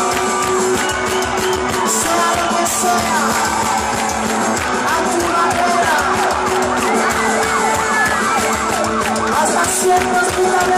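Live rock band playing loud through a big PA, heard from within the crowd. From about three seconds in, a siren-like wailing sweeps up and down over the music.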